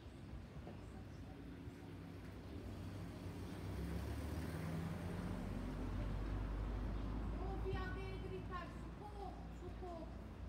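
A motor vehicle's engine rumbling, swelling over a few seconds and then easing off, with voices talking near the end.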